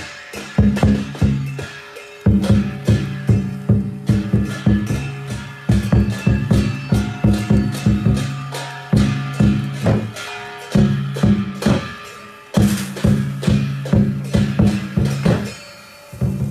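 Chinese lion dance percussion: a big drum beaten in quick, driving strokes with cymbal clashes, in phrases broken by short pauses every few seconds.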